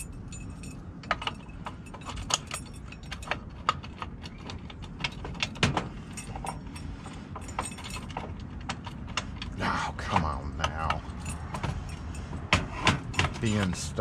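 Keys on a ring jangling, with many small metallic clicks, as a euro profile cylinder with its key in is twisted and pushed into a metal gate-lock body. The cylinder binds and won't seat easily.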